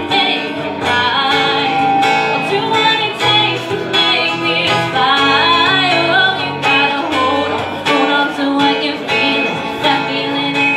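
Live acoustic pop duet: a male and a female voice singing together over strummed acoustic guitar.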